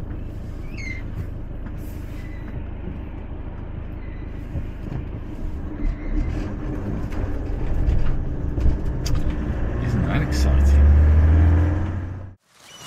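Van engine and road noise heard from inside the cab while driving: a steady low rumble that grows louder over the last couple of seconds as the engine works harder.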